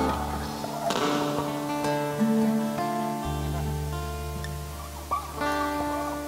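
Live band playing a slow instrumental introduction without singing: strummed acoustic guitars over held keyboard chords, the chord changing every second or two.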